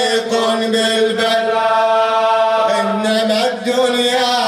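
A man's solo voice chanting an Arabic Husayni elegy into a microphone, drawing one syllable out into a long held note in the middle of the phrase.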